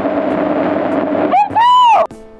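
Hiss and steady hum of an old black-and-white film soundtrack, then about one and a half seconds in, a loud, high-pitched cry from one voice that rises and falls.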